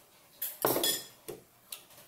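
A spoon and bowl clattering as they are handled and set down on a table: a light click, then a louder clatter of about half a second, then two lighter knocks.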